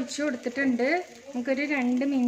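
A woman talking, over the faint sizzle of paniyaram batter frying in an oiled non-stick appe pan.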